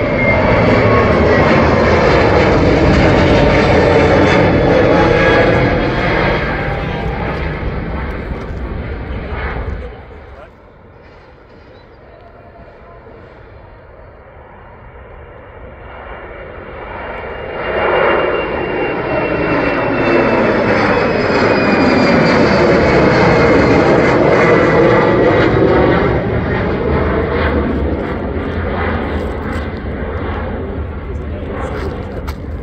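Jet airliners taking off one after another. First an Airbus A321neo's geared turbofans at climb power pass overhead, loud, with a falling whine; the sound cuts off abruptly about ten seconds in. After a quieter stretch, an Embraer E190's turbofans build up at takeoff power, stay loud from about 18 to 26 seconds with a slowly falling whine, then fade.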